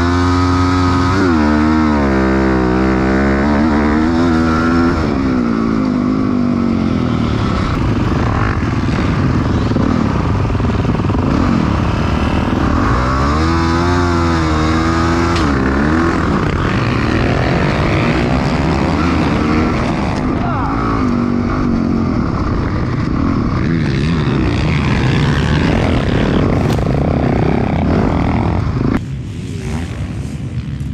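Motocross dirt bike engines racing, heard from the rider's onboard helmet camera: the engine revs rise and fall again and again through the gears, with other bikes in the pack nearby. Near the end the sound drops to a quieter, more distant bike engine.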